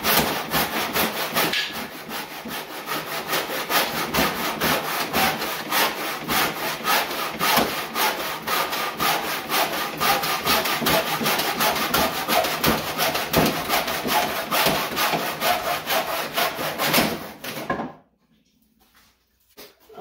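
Backsaw in a Millers Falls miter box crosscutting a wooden board by hand, in quick, even back-and-forth strokes. The sawing stops abruptly about two seconds before the end.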